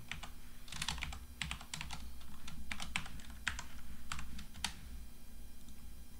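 Typing on a computer keyboard: a run of about a dozen separate keystrokes, stopping a little under five seconds in.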